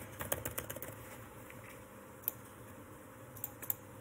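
Computer keyboard keys clicking faintly: a quick run of key presses in the first second, a single click a little past halfway, and a few more near the end.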